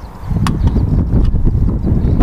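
Wind buffeting the microphone, a loud low rumble that picks up about a quarter second in, with one sharp click about half a second in.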